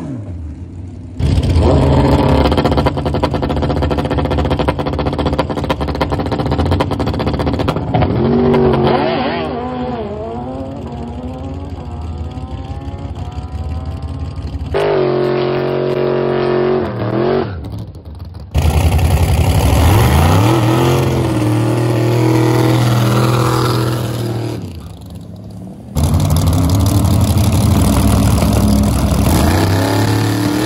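Drag-racing engines at high revs, heard in a string of short clips joined by abrupt cuts. Loud steady engine running alternates with revs that climb in pitch as the vehicles accelerate.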